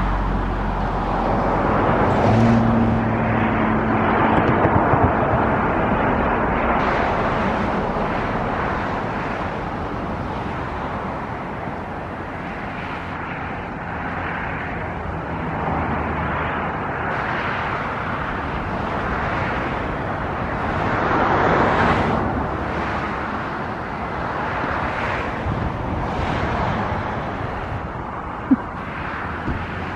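Steady rushing outdoor noise that swells and fades several times, loudest a few seconds in and again about twenty-two seconds in.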